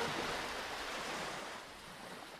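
A steady rush of water-like noise, a wave or pool sound effect under the advertisement, fading out gradually.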